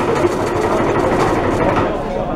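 Lion dance percussion, drum and cymbals, playing a loud, fast, dense roll.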